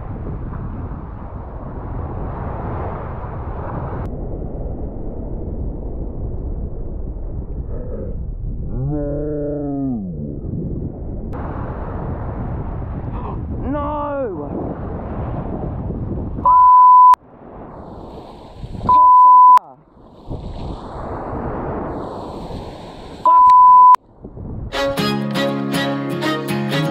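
Wind on the microphone over breaking surf, with a couple of brief wordless shouts. Later, three short high censor beeps cut in, and guitar music starts near the end.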